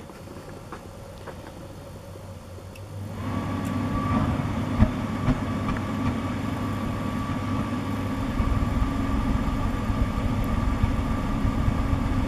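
Portable diesel forced-air heater starting up about three seconds in: its fan motor and fuel pump run with a steady hum and a thin high whine, but the burner does not ignite, so it is blowing unburnt diesel smoke. A single sharp click comes about five seconds in.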